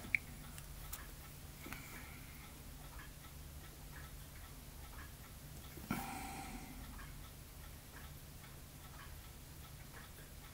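Faint, regular ticking over a low steady hum. There is a sharp click just after the start, and about six seconds in a louder knock with a short metallic ring.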